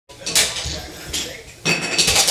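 Hard toy pieces clattering as they are rummaged in a cardboard box: three sharp clattering bursts, the first the loudest.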